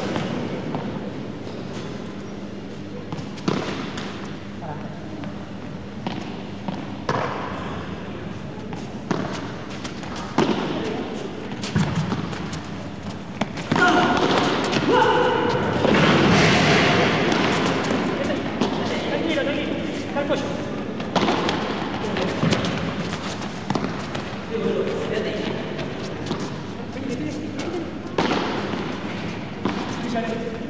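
Padel rally: a run of sharp knocks as the ball is struck by solid paddles and bounces off the court and walls, over crowd voices. The crowd noise swells loudly for a few seconds about halfway through.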